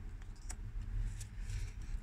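Low, steady rumble of road traffic coming in from outside, with a single light tap about half a second in as a tarot card is laid down on the cloth.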